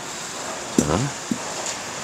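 A man's voice saying one short word, "자" ("okay"), about a second in, over a steady background hiss.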